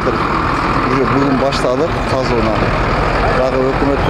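Steady drone of a heavy vehicle's engine running, with a man speaking over it in short phrases.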